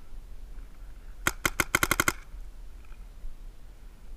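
Paintball marker firing a rapid string of about nine shots in under a second, a little over a second in.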